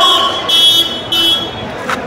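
Vehicle horn honking twice in quick succession, two short beeps over steady street traffic noise.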